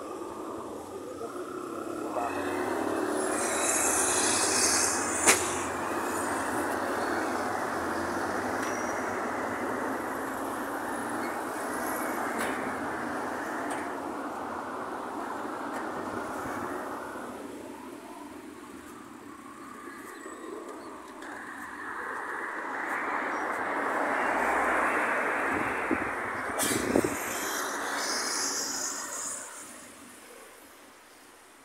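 Road traffic passing: a rushing noise swells up, fades away, then swells up again as a second vehicle goes by, with a sharp click about five seconds in.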